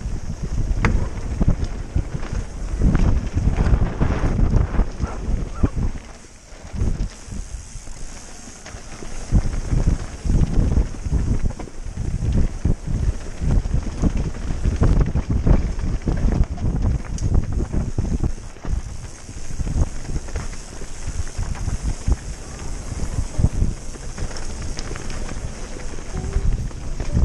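Wind buffeting the microphone of a camera on a descending mountain bike, with the rattles, knocks and thumps of the bike running fast over a rough dirt downhill trail. It eases off briefly about six seconds in, then picks up again.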